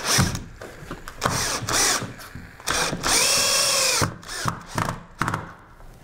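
Cordless drill driving screws through a cedar ledger board into a wall stud, in several separate trigger bursts, the motor whining up and down in pitch with each. The longest run comes about three seconds in and lasts about a second.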